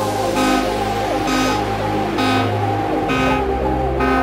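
Techno track in a breakdown: the kick drum has dropped out, leaving a synth chord that pulses about once a second over a held bass line.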